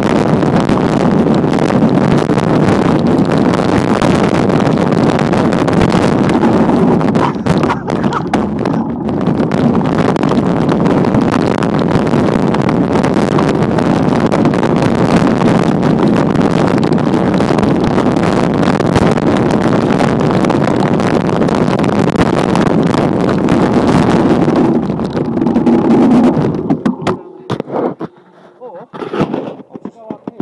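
Wind buffeting the microphone of a moving mountain bike, mixed with tyres rolling over a dirt trail: a loud, dense, steady rumble that drops away suddenly near the end.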